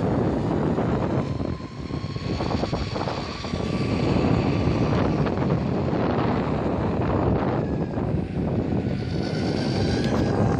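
DIY electric mountainboard under way on asphalt: a steady rumble of the tyres rolling over the rough surface and wind on the microphone, with a faint whine from the electric motors that drifts up and down in pitch with speed.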